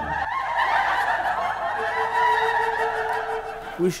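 Several men cheering and laughing, with long drawn-out shouts that waver in pitch.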